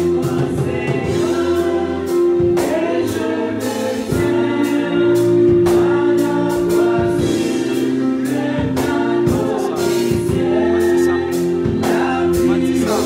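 Gospel music: a choir singing over long held notes and a steady percussive beat.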